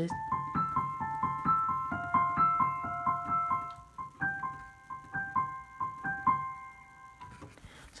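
Digital piano playing a short repeating figure of single high notes, about three a second, in two phrases with a brief break about four seconds in; the notes trail off near the end.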